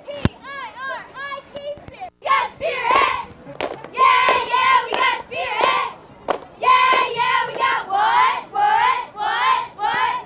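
A squad of high school cheerleaders chanting a cheer in unison, the words shouted in a steady rhythm, with sharp claps. A short call leads in, and the full chant starts about two seconds in.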